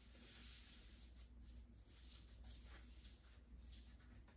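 Near silence with faint, irregular scratchy rustling of hair being worked through by a gloved hand.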